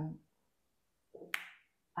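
A spoken 'um' trails off into silence. About a second and a half in comes a single short, sharp mouth click.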